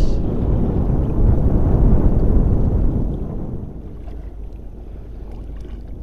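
Wind buffeting the microphone over open, choppy water, a heavy low rush that is loud for about the first three seconds and then eases off.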